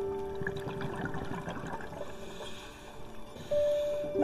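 Soft piano music: a held note dies away early on, leaving a stretch of bubbling water sound, and a new piano note comes in near the end.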